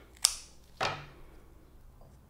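Scissors snipping through a statice flower stem with one sharp click, followed by a second, softer knock just before the one-second mark.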